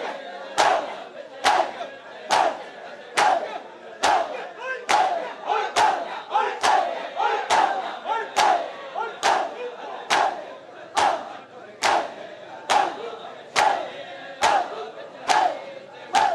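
A large crowd of men performing matam, slapping their bare chests with open hands in unison, a sharp collective slap a little more than once a second. Between the strokes the crowd shouts together.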